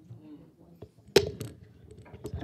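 Microphone handling noise: one sharp, loud knock a little over a second in as a handheld microphone is taken up, followed by smaller bumps and rustling. A voice is faintly heard at the start.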